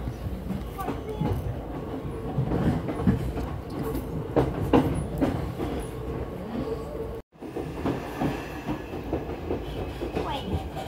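Ride noise inside a moving passenger train: a steady rumble of wheels on track with scattered clicks and knocks over the rail joints and a faint steady hum. The sound cuts out for an instant about seven seconds in.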